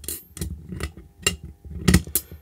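Reel of solder wire being sat into a metal solder-reel holder, its spindle and frame clicking and knocking as it is handled: about five small knocks, the loudest just before the end.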